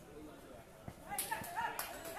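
Men shouting in short, excited cries during a kabaddi raid and tackle, the shouting breaking out about a second in, with a few sharp smacks among the cries.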